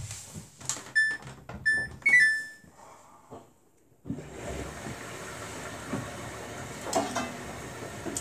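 Samsung Bespoke AI washing machine's electronic signal: two short beeps about a second in, then a quick three-note falling chime. After a moment of near silence, water starts rushing in about four seconds in as the first rinse with spray begins, a steady hiss with a few knocks from the drum.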